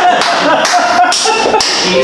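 Audience laughing in bursts, loud and broken by short sharp sounds.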